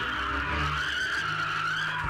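A woman's long, high scream, held steady with a slight waver and cut off at the end, over a low steady drone.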